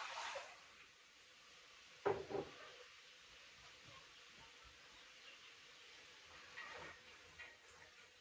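Kitchen handling noises: a couple of sharp knocks about two seconds in and a lighter clatter near seven seconds, over quiet room tone.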